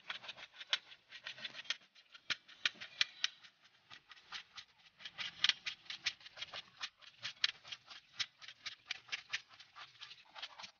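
A knife slicing a raw carrot on a plate: a quick, fairly even run of short, crisp chops, about four to five a second, the blade knocking on the plate with each cut.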